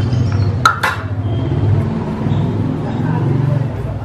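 Two quick clinks of a metal mesh sieve knocking against a mixing bowl, close together about a second in, as sugar is poured and sifted into cake batter, over a steady low background.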